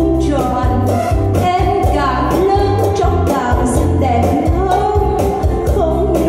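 A woman singing a melody into a microphone with a live band of keyboards and drums, over a steady low beat with regular drum strikes.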